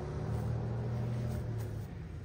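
A car engine running with a steady low hum, which drops away shortly before the end.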